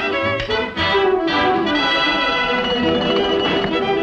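Orchestral cartoon score with brass and strings, with sharp accents early on and a line sliding down in pitch through the middle.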